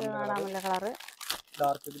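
A voice speaking, with the crinkle of clear plastic saree wrappers being handled, a sharper crackle a little past the middle.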